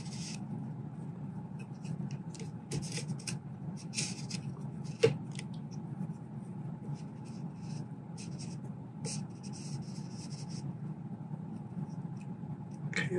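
Hands rubbing and turning parts as a threaded air stripper is screwed down onto a carbon-fibre barrel tensioner tube, compressing its spring: intermittent short scraping and rubbing strokes, with one sharper click about five seconds in. A steady low hum runs underneath.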